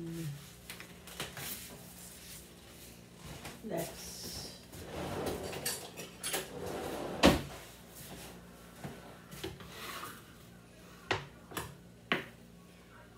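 Kitchen clatter: scattered clicks and clunks of pans, utensils and drawers or cupboards being handled, with a scraping, rustling stretch about five seconds in that ends in one loud knock, and a few more clicks near the end, over a faint steady hum.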